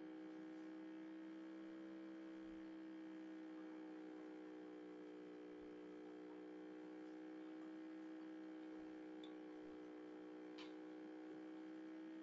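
Faint steady electrical hum with a stack of even overtones, over otherwise near silence; a faint click about ten and a half seconds in.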